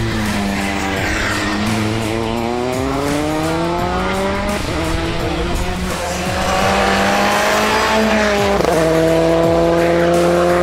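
Skoda Fabia N5 rally car engine under hard acceleration, its note climbing steadily, falling back at a gear change about halfway through, climbing again, then falling at another gear change near the end.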